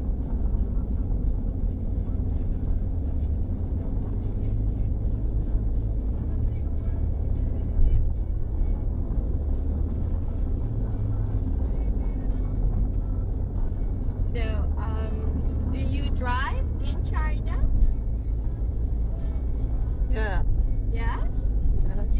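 Steady low rumble of road and engine noise inside a Honda car's cabin while cruising on a highway. Two brief thumps come about eight seconds in and near eighteen seconds.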